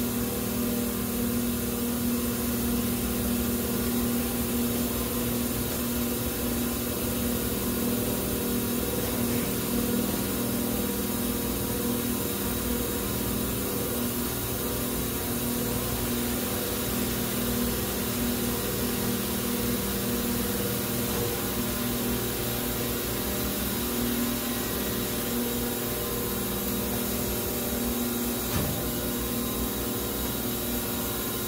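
Large hydraulic molding machine running, its hydraulic pump and motor giving a steady hum with a few fixed tones, unchanging throughout; one faint click near the end.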